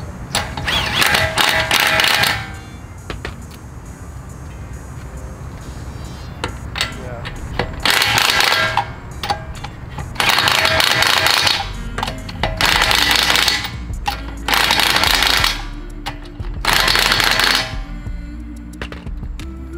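Cordless impact wrench hammering on a car's wheel lug nuts in six short bursts of about a second or two each, one after another with pauses between, as it works around the six-lug wheel.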